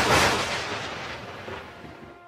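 Cinematic impact sound effect for an animated logo intro: one sudden hit that fades away gradually over about two seconds.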